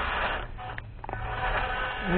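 Electric motor and gearbox of a WPL D12 1/10-scale RC pickup whirring as it drives. The sound thins out about half a second in and picks up again after about a second.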